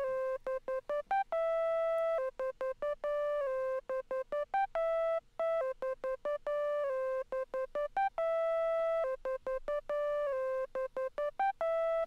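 A Serum software synth sine-wave lead (analog BD sine wavetable) playing a short repeating melody on its own, notes gliding into one another with portamento. Each note opens with a quick click of white noise.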